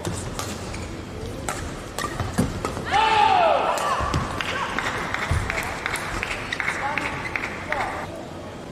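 Racket strikes on a badminton shuttlecock during a rally, sharp single cracks about a second apart. About three seconds in comes a loud falling shout, followed by crowd noise with many claps that dies down just before the end.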